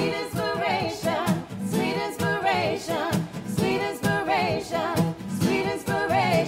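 Several voices singing together to two strummed acoustic guitars.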